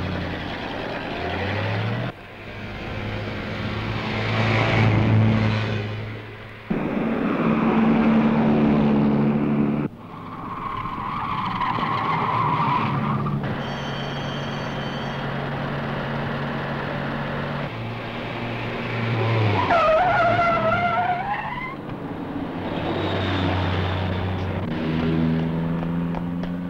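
Car engines running and revving loudly, in several abruptly cut sections, with a tyre squeal that slides down in pitch about three-quarters of the way through.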